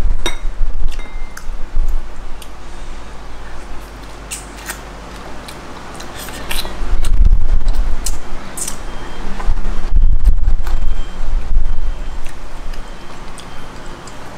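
Cooked field snail shells clicking against each other and against a toothpick as the snail meat is picked out, in scattered small clicks, with low thumps and rumbling that are loudest about seven and ten seconds in.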